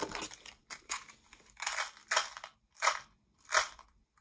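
Plastic Tic Tac box being tapped and shaken over an open hand to dispense mints, the mints rattling inside in about seven short bursts, roughly one every two-thirds of a second.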